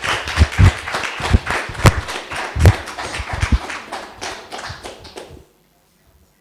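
Audience applauding, a dense patter of claps with a few much louder single claps among them, cut off suddenly about five and a half seconds in.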